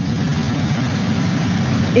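Steady rumble and road noise inside a moving battery-electric city bus, starting abruptly.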